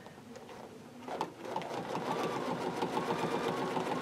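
Bernina sewing machine free-motion quilting under its BSR stitch regulator: a click about a second in, then the needle running in a fast, even rhythm that grows louder as the quilt is moved in a circle. Under the regulator the stitch speed follows how fast the fabric is moved.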